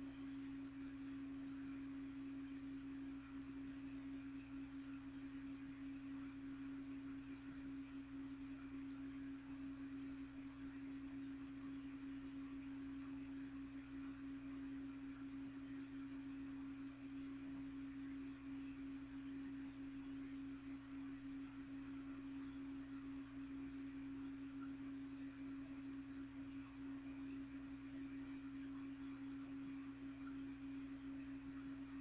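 Box fan running: a steady low hum holding one constant tone, with a fainter deeper hum and a soft whir over it, unchanging throughout.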